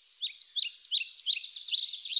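A songbird chirping: a quick run of short, high notes that rise and fall, several a second, over a steady high background hiss.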